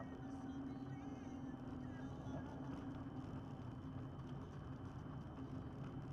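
Engine and road noise of a moving vehicle, heard from inside it: a steady low drone over an even rush of tyre and wind noise, its pitch holding level at a constant cruising speed.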